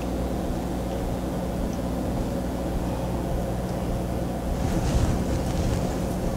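A steady low hum with no distinct event, apart from a brief slight rise about five seconds in.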